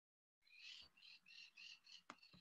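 Near silence broken by faint, high-pitched chirps repeating about three times a second, from an animal calling in the background.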